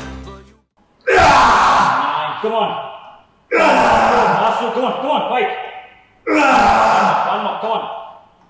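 A man straining loudly under a heavily loaded leg press: three forceful exertion groans or exhalations, one per rep, each starting sharply and trailing off over about two seconds.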